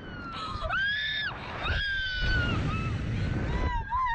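A woman on a Slingshot catapult ride screaming, in two long high-pitched screams that sag in pitch, with a steady roar of wind on the microphone.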